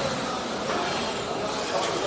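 Steady construction-site din: continuous machinery noise with a faint wavering hum.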